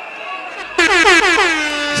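A man's voice shouting one long drawn-out call into a microphone, loud and overdriven through the PA. It starts under a second in, its pitch sliding down and then holding.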